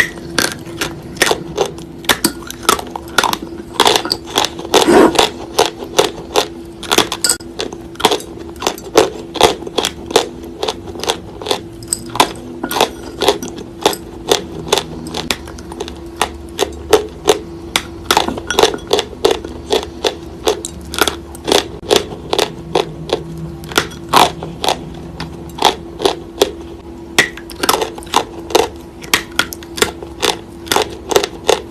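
Wet chalk being bitten and chewed right at the microphone: a steady run of sharp, crisp crunches, about two or three a second, over a steady low hum.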